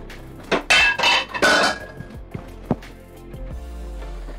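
Background music, with kitchen ware being handled: two short clattering bursts about a second in and a single sharp click near three seconds.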